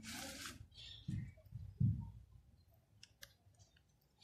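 Plastic bottle caps being handled and shifted on a piece of cardboard. A brief scrape of cardboard at the start is followed by two soft thumps about one and two seconds in, the second the loudest, then a few light clicks near the end.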